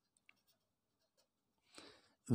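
Near silence, with the faint scratching of a ballpoint pen writing a few short strokes on paper.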